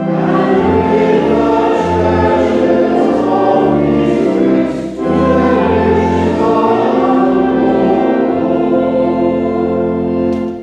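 Congregation singing a verse of a hymn in held, stepping notes over organ accompaniment, with a short breath between lines about halfway through.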